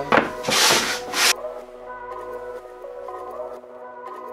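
A few quick strokes of an 80-grit sanding sponge rubbing across the cut edges of pine fence pickets, knocking off the burrs, ending about a second and a half in. Background music plays throughout.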